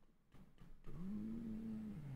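A man humming a closed-mouth, thoughtful "hmm" about a second long, starting about halfway in: the pitch rises, holds steady, then drops at the end. A few faint clicks come before it.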